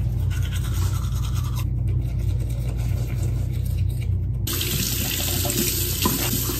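Teeth being brushed with a toothbrush. About four and a half seconds in, a bathroom faucet starts running as she leans over the sink to rinse.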